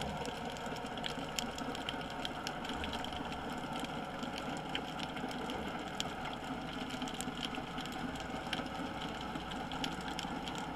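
Underwater ambience picked up by a submerged camera: a steady low hum and hiss, broken by irregular sharp clicks and crackles.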